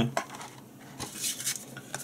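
Handling noise from unpacking: a few light clicks and taps from the plastic tray and cable, with a brief paper rustle about midway as the instruction leaflet is handled.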